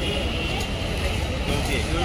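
Busy shop ambience: indistinct chatter of customers' voices over a steady low rumble.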